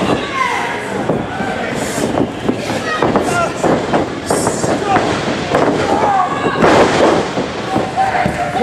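Small live wrestling crowd shouting and yelling amid the slaps and thuds of two wrestlers striking each other and hitting the ring canvas, with one louder crash about seven seconds in.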